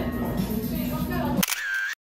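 Background music that cuts off abruptly about one and a half seconds in, replaced by a single camera-shutter sound effect lasting about half a second, then dead silence.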